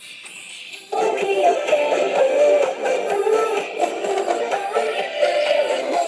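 A song with singing played through a small portable vibration speaker, thin and midrange-heavy. About a second in it jumps much louder as the speaker is pressed against an upturned paper cup, which it uses as a sounding board, and it drops back at the very end.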